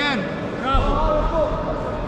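Men shouting in a sports hall: the end of a coach's call of "again!" right at the start, then other voices calling a little under a second in, over a brief low rumble.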